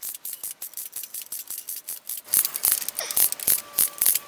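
Winding ratchet of a 3D-printed plastic Roskopf-style pocket watch clicking rapidly as its steel mainspring is wound by hand. The clicks come in uneven runs of many a second and grow louder about two seconds in.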